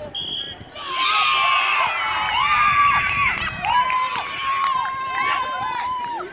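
A short, high whistle blast, then from about a second in a group of young children shouting and cheering together in high voices.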